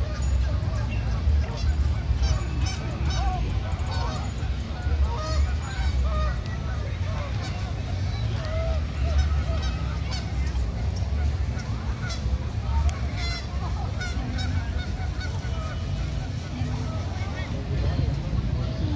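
Geese honking over and over, over a steady low rumble.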